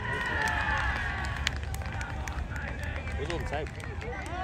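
Several voices shouting and calling out across an outdoor playing field, over a steady low wind rumble on the microphone. A single sharp click comes about a second and a half in.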